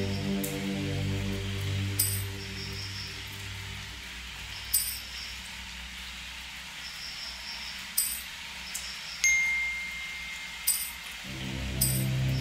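Electronic ambient backing: a sustained low synthesizer chord fades away after about four seconds and comes back near the end, with light chime strikes every second or two over a steady hiss. A thin high tone is held for about two seconds near the end.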